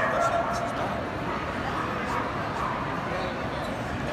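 A dog whining and yipping in a few short, high calls, the clearest right at the start, over the steady chatter of a crowded hall.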